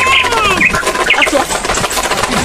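Short bird-like chirps and whistling glides, several quick ones in the first second and a half, with no music underneath.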